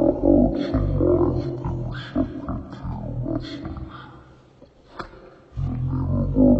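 A man's loud, amplified voice preaching in impassioned bursts, dropping away briefly about four and a half seconds in and then coming back strongly.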